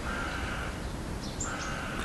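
A bird cawing twice, each call about half a second long, with a faint steady hum underneath.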